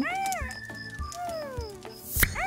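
Cartoon voice sound effect of a talking box character: a short meow-like call that rises and falls, then a long falling glide, over soft background music with a steady beat.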